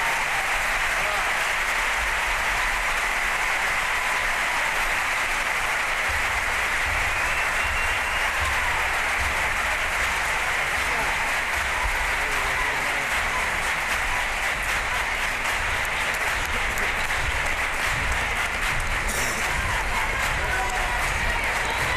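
Large theatre audience applauding, a dense steady clapping that holds at the same level throughout.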